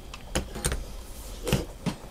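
A few light clicks and knocks, about four spread over two seconds, from a DJI Osmo handheld gimbal rig being handled in the hand.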